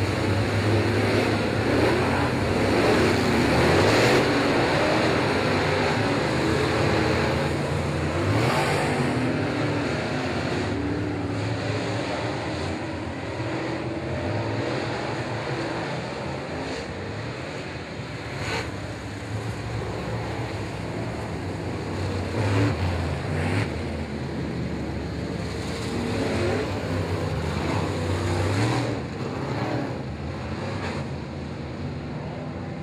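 A pack of limited late model dirt-track race cars at full throttle, their V8 engines revving up and down as they pass. The sound is loudest in the first few seconds.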